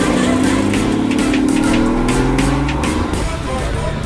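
Porsche GT4's flat-six engine accelerating hard on a race track, its pitch rising steadily over about three seconds, mixed with background music with a steady beat.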